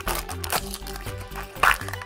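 Thin plastic blind-bag wrapper crinkling and tearing in several short bursts as it is pulled open by hand, over background music.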